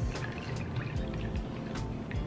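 Sparkling wine being poured from the bottle into a cocktail glass of orange juice to make a mimosa, under background music with a steady beat.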